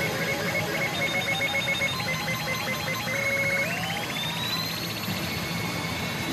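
Re:Zero pachinko machine's electronic sound effects: rapid pulsing beeps, then a held tone that glides upward about three and a half seconds in and trills for about two seconds, over a steady background din.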